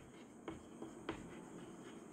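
Chalk writing on a blackboard: faint, scattered taps and scratches of the chalk strokes.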